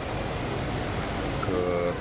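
Steady background hiss of room noise in a pause between a man's words. Near the end he makes a short held voiced sound before speaking again.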